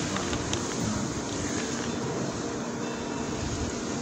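Steady outdoor city background noise: a low rumble under an even hiss, with a couple of light clicks about half a second in.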